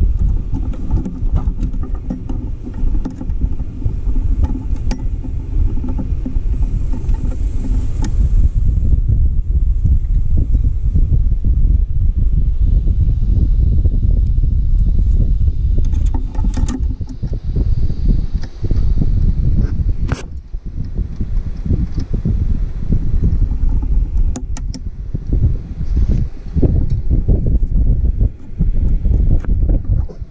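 Wind buffeting the microphone in a low, uneven rumble. Over it come scattered small clicks and taps from a screwdriver and wire terminals being worked at a terminal block.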